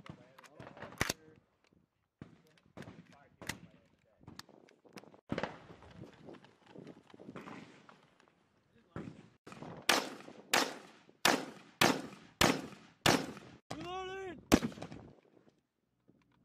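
5.56 mm M4 carbine fire on an open range: a few single shots a second or two apart, then a steady string of about eight shots at roughly two a second.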